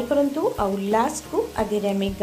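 Chicken breast pieces frying on a tawa with butter, sizzling. A louder melody of pitched notes with sliding rises plays over the frying.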